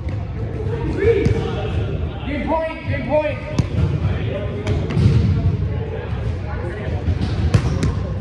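A volleyball struck a few times, sharp slaps ringing out, two close together near the end, amid players' voices in a large echoing gym.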